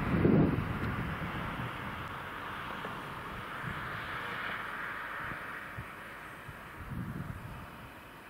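Wind on the microphone: a steady outdoor hiss that slowly fades, with a few low buffets near the start and again near the end.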